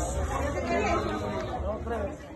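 Indistinct chatter of people talking in the background, with no clear words.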